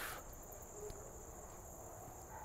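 Faint, steady high-pitched drone of insects in the trees, with a low rumble of outdoor background noise beneath it.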